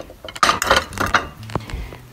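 Plates being put back down on a table: a quick series of clinks and knocks.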